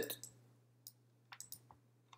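A few faint computer clicks while searching for a file: a single click just under a second in, then a quick cluster of three or four about a second and a half in, over a steady low hum.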